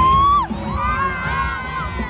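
Concert crowd cheering and screaming: one loud high-pitched scream rises, holds and breaks off about half a second in, followed by many overlapping high screams from the audience.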